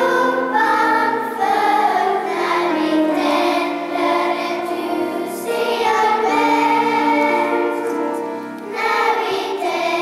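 A children's choir singing a slow song in a church, with held notes and a brief pause between phrases near the end.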